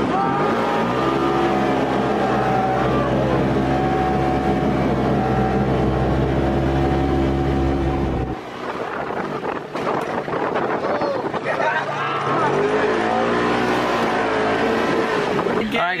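Polaris RZR side-by-side engine under way on a dirt road: it climbs in pitch in the first second, then runs at a steady speed. About eight seconds in the sound cuts abruptly to a noisier stretch of driving, and the engine climbs again near the end.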